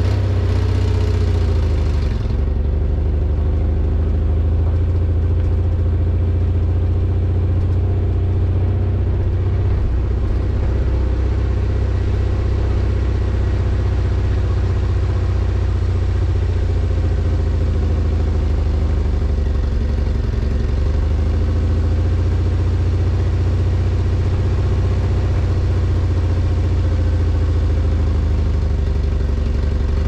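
A car driving slowly along a dirt road, heard from inside the cabin: a steady low engine and road rumble, with a higher hiss in the first couple of seconds.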